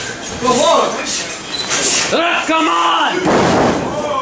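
Shouts and yells in a wrestling ring, with a long drawn-out yell about two seconds in, and sharp thuds of a wrestler's body hitting the ring mat.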